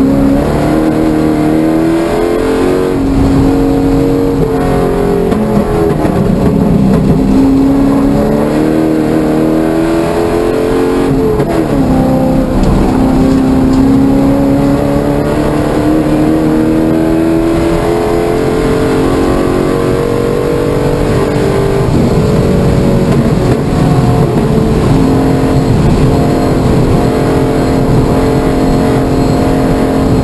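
C5 Corvette Z06's LS6 V8 at race pace, heard from inside the cabin: loud, its pitch climbing under acceleration and dropping back several times as the car works through the corners.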